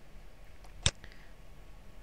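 A single computer mouse click about a second in, over faint steady background hiss.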